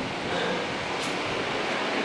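Steady hiss of room air conditioning, with a faint click about a second in.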